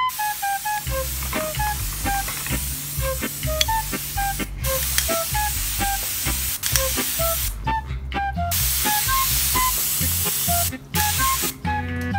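Water mister spraying a fine mist in long hissing sprays, broken by short pauses about four, eight and eleven seconds in. Background music with a melody and bass line plays under it.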